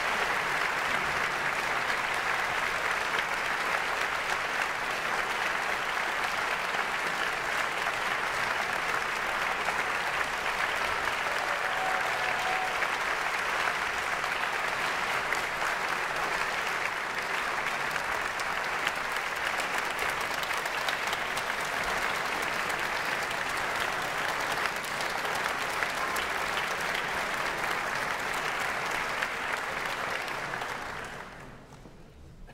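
Concert audience applauding in a large hall: dense, even clapping that holds steady in level.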